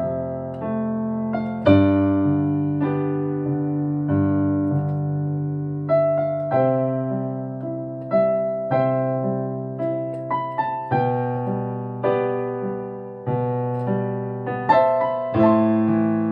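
Solo electronic keyboard played with a piano sound: sustained chords over held bass notes, a new chord struck about every second or two, each note decaying slowly under a simple melody.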